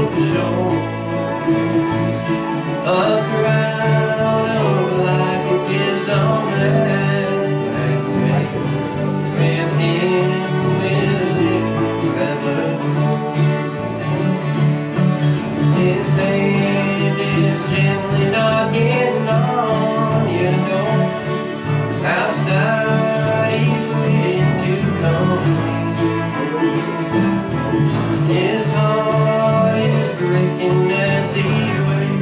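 Acoustic country band playing: several strummed acoustic guitars over a steady bass line, with a fiddle.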